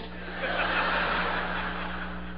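An audience laughing, swelling about half a second in and slowly dying away.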